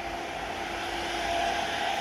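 Automatic KF94 mask-making machine running: a steady mechanical whir with a constant hum tone, growing slightly louder through the second half.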